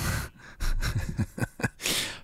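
A man laughing breathily: a sharp breath at the start, a few short bursts of laughter, and another gasping breath near the end.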